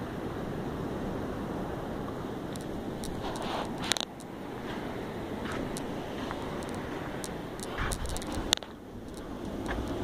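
Steady outdoor background noise with a low rumble, broken by a few sharp clicks about three to four seconds in and a short cluster of low thumps and clicks near the end.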